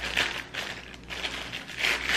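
Clear plastic wrapping crinkling in irregular bursts as it is worked off a metal double jigger, loudest near the end.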